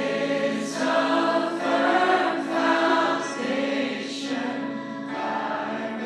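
Congregation or choir singing a worship song together.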